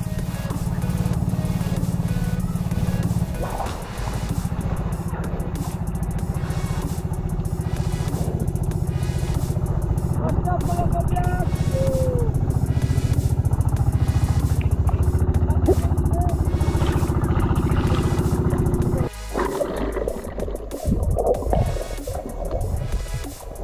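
A boat engine running steadily, a low pulsing drone that cuts off abruptly about nineteen seconds in, with a few faint voices over it.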